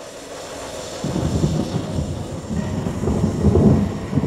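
Snowdon Mountain Railway steam rack locomotive working uphill, pushing its carriage, heard as a rough low rumble that builds over the first second and is loudest about three and a half seconds in.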